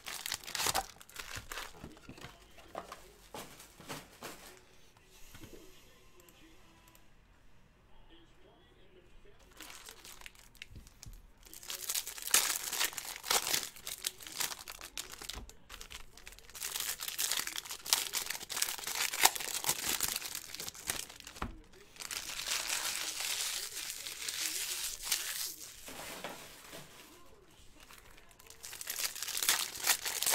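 Foil wrappers of trading-card packs crinkling and tearing as the packs are ripped open by hand. It comes in long bursts through the second half, after a quieter stretch of several seconds.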